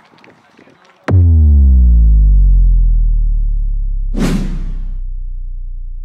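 Synthesized outro sting: a sudden deep boom about a second in, its pitch slowly falling as it fades away, with a whoosh about four seconds in.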